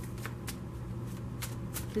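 A deck of tarot cards shuffled by hand: a run of soft, irregular card clicks.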